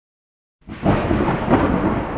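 A loud rumbling burst of noise starts suddenly about half a second in, after a moment of silence.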